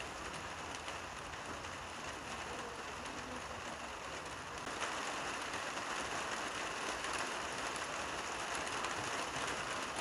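Steady rain noise, becoming louder and brighter about halfway through.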